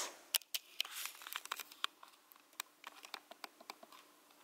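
A run of light, irregular clicks and ticks, several a second, loudest just after the start and thinning out toward the end.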